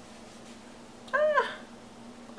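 One short, high-pitched call about a second in, rising and then falling in pitch, over a faint steady low hum.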